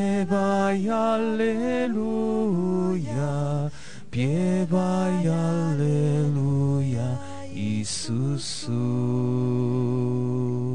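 Slow devotional singing: one voice holding long, gliding sung notes in phrases broken by breaths, over steady low held notes of an accompaniment.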